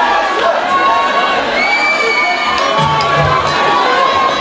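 Concert audience cheering and shouting, many voices at once, before the band plays. A low steady note from the stage sounds briefly about three seconds in.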